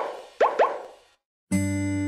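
Three quick rising 'bloop' sound effects, one and then two close together, fading away. After a moment of silence, soft music starts about one and a half seconds in.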